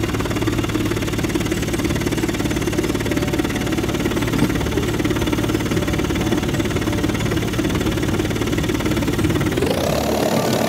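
High-frequency chest wall oscillation vest (airway clearance vest) and its air-pulse generator running: a steady, loud vibrating drone as the vest rapidly pulses against the chest to loosen mucus in cystic fibrosis therapy. Its tone shifts higher just before the end.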